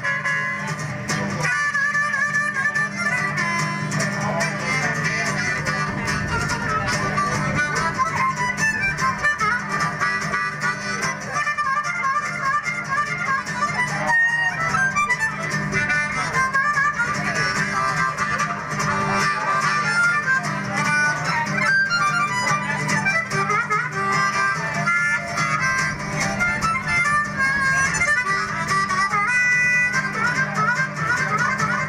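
Blues harmonica solo, the harmonica cupped in the hands against a microphone, over a strummed acoustic guitar accompaniment.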